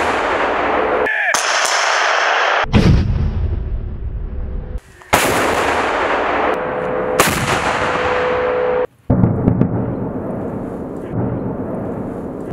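2S4 Tyulpan 240 mm self-propelled mortars firing: a series of heavy blasts, each trailing off into long rumbling, broken off abruptly between shots. Lower, rumbling shell bursts follow near the end.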